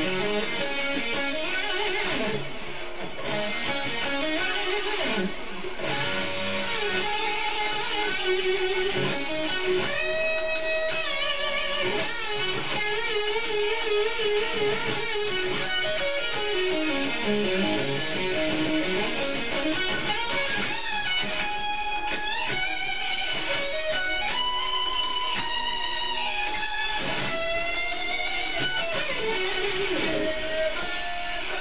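Electric guitar playing a fast rock lead solo, with wide vibrato on held notes and several string bends rising in pitch.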